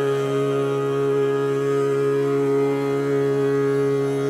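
Hindustani khayal singing in raga Shudh Kalyan at slow vilambit tempo: a male voice holds one long, steady note over a tanpura drone.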